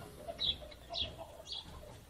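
Faint short bird calls, three chirps about half a second apart, over quiet room background.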